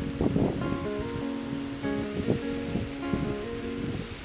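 Acoustic guitar strummed in an instrumental passage, chords ringing on between strums.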